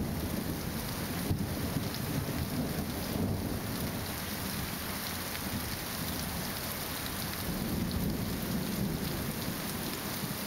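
Thunder rolling low over steady rain, swelling near the start and again about eight seconds in.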